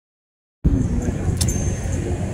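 Outdoor background noise: a steady low rumble with a faint high whine, starting abruptly after about half a second of silence, with a single click about a second and a half in.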